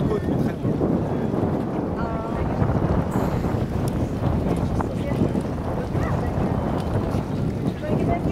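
Wind buffeting the microphone, a steady low rumble, with lake waves washing in the background and a faint voice about two seconds in.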